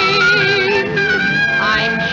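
Song from a 1930s film-musical soundtrack recording: a singer holds long notes with a wide, even vibrato over the accompaniment, moving to a new held note near the end.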